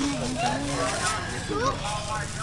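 People talking in conversation around a produce stall, several overlapping voices with no single clear speaker.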